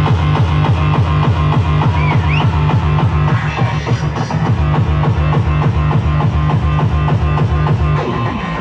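Loud live band music with a heavy bass line and a fast, steady beat, played by electronic and rock instruments.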